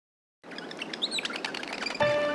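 Silence, then birds chirping from about half a second in: quick short chirps and brief gliding whistles setting a morning scene.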